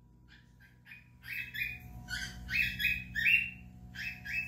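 An animal's short, high squeaky calls: about eight of them, each falling in pitch, starting about a second in and getting louder toward the end, over a faint steady hum.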